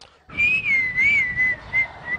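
A high whistle tone that begins a moment in, wavers up and down in pitch, then settles to a steadier note.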